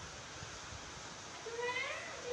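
A young monkey's cry, a single high, whiny call rising in pitch, starting about one and a half seconds in over low background noise.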